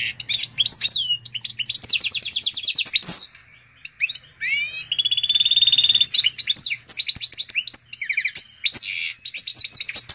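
Goldfinch × canary hybrid (pintagol mule) singing: fast rattling trills and twittering phrases, with a short pause about three seconds in.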